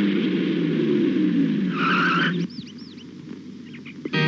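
A motor vehicle running with a steady low drone, then a brief high squeal about two seconds in, like tyres or brakes as it stops. The sound cuts off half a second later, leaving a few short high chirps.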